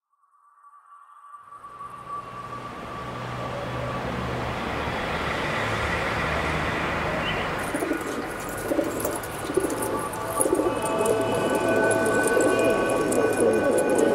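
A flock of domestic pigeons cooing, fading in from silence over the first few seconds and growing louder toward the end.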